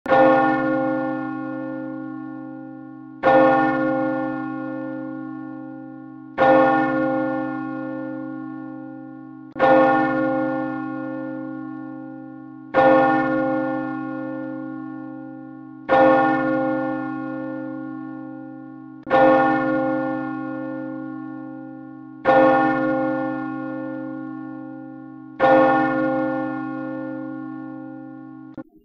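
A single large church bell tolling slowly, struck nine times about every three seconds. Each stroke rings out and fades away before the next.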